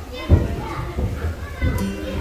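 Chatter of a group of schoolchildren talking among themselves, with a single low thump about a third of a second in.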